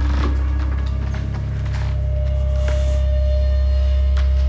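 Suspenseful film score: a deep, rapidly pulsing low drone with a single held higher note coming in about half a second in, and a few faint ticks over it.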